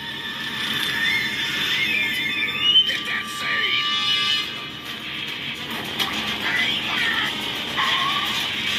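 Animated film soundtrack played back through a computer's speakers: music mixed with shrill, gliding squeals and voices.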